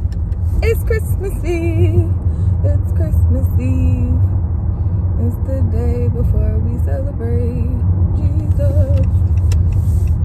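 A woman singing a little tune to herself over the steady low rumble of a car, heard from inside the cabin.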